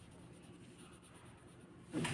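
Faint scratching of a colored pencil shading on paper.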